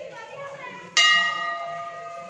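Temple bell struck once about a second in, ringing on with several clear tones that fade slowly.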